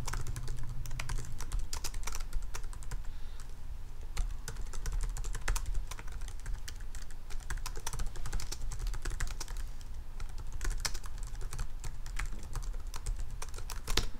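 Irregular typing on a computer keyboard, with quick runs of key clicks and short pauses, over a steady low hum.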